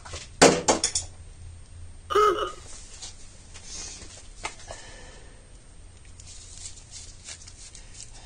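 A few sharp clicks and knocks of small tools and parts being handled at a workbench, then a brief grunt-like vocal sound about two seconds in and a single click a little later.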